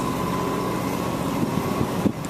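Steady low engine hum, as from a boat motor running, over a constant background noise.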